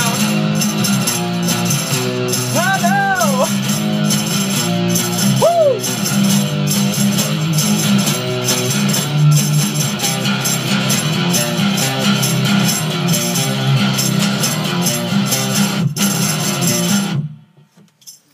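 Acoustic guitar strummed hard in a rhythmic riff, doubled by a distorted octave-down bass line and played loud through an amplifier. The playing cuts off suddenly just before the end.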